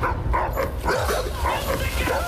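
A dog barking repeatedly, a short bark every third to half second, over a steady low bass throb.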